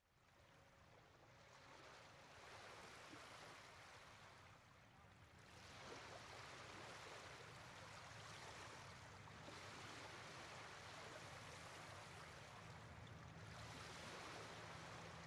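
Faint water sound effect of a boat on waves: a steady wash of sea noise that fades in over the first couple of seconds, dips briefly about five seconds in, then holds.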